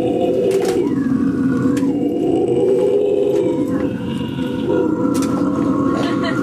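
Amplified electric guitars played loudly and with distortion, holding droning, ringing notes with a few sliding pitches.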